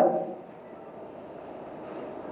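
A pause in a man's talk: his last word dies away within the first moment, then only faint, steady room noise with no distinct sounds.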